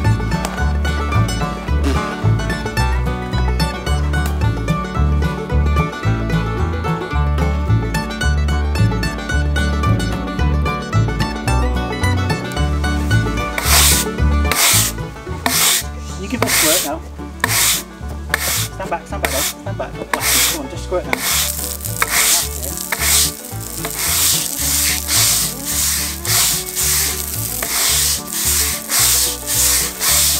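Background music with a steady beat. About halfway through, a stiff-bristled broom joins it, scrubbing wet stone paving slabs in quick repeated strokes, about two a second, growing denser near the end.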